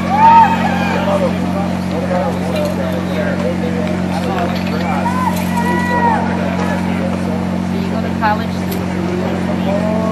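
Steady engine-like drone of the generator powering a floodlight, running without a break under scattered crowd voices talking.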